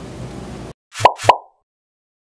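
Two quick cartoon-style pop sound effects about a quarter second apart, each a sharp click with a brief tone, after faint room tone that cuts out to silence.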